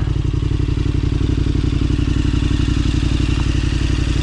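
KTM adventure motorcycle's twin-cylinder engine running at low revs with a steady, even pulse as the bike crawls over loose rock.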